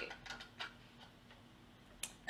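Quiet room tone with a few soft, faint clicks in the first second, right after a spoken word ends.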